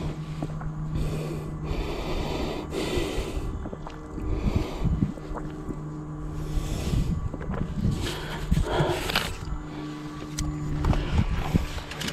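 A mountain biker's breathing close to a chest-mounted microphone, a breath roughly every second or so, over low wind rumble. A low steady hum comes and goes in the background.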